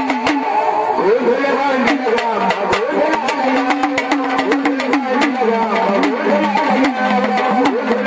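Live gondhal devotional folk music: a sambal drum beating fast, uneven strokes over a steady buzzing drone, with a voice singing gliding melodic lines.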